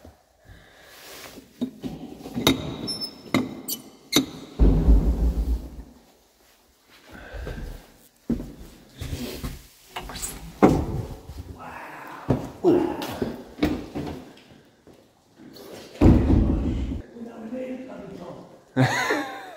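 Indistinct voices with scattered knocks, clicks and heavy low thumps, the loudest a little after four seconds in and again near the end.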